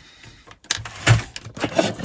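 Handling noise from a metal MIDI foot controller (Paint Audio MIDI Captain STD) being gripped and shifted on a wooden desk. A few short, irregular knocks and rubs begin about half a second in.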